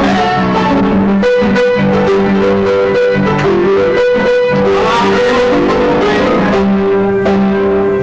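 Ragtime saloon-style piano playing an upbeat medley, with continuous bright melody over a steady bass line.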